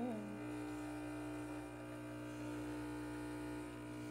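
Espresso machine's pump buzzing steadily while a double shot extracts from the portafilter into a shot glass.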